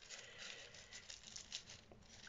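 Faint rustling and crinkling of tissue paper as fingers press and shape a paper carnation, in a few scattered soft crackles.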